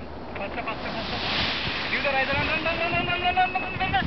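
Wind rushing over the microphone, then a person's voice in one long, high held call that wavers slightly in pitch, starting about halfway through.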